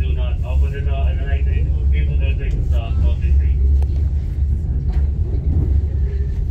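Steady low rumble of a KTM Tebrau Shuttle train running, heard from inside the carriage, with people's voices talking over it for the first three seconds or so.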